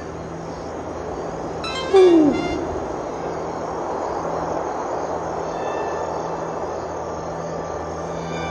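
A single owl hoot about two seconds in, a short call that falls in pitch, over quiet background music and a steady hiss.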